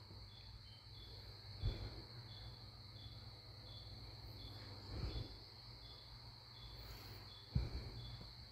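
Faint insect chirring, as of a cricket, with short chirps repeating evenly a little under twice a second. A few soft low thumps fall about one and a half, five and seven and a half seconds in.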